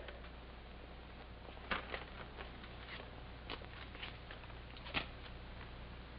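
Faint rustling and a few light clicks of a jacket being searched for money, over the steady hiss and low hum of an old film soundtrack.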